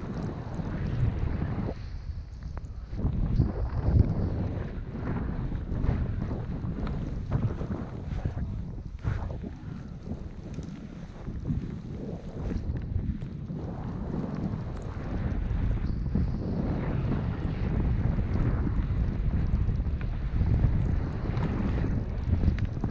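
Wind buffeting a camera's microphone as a skier glides down through deep fresh powder, with the skis swishing through the snow; an uneven low rushing that swells and eases, a little louder in the second half.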